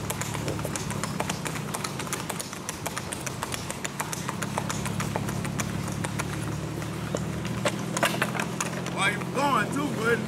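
Shod hooves of a gaited horse striking asphalt in a quick, even clip-clop as it singlefoots along the road, over a steady low hum from a vehicle engine. A voice comes in near the end.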